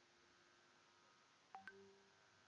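Near silence, then about one and a half seconds in, two short electronic beeps in quick succession, each a sharp tone that dies away.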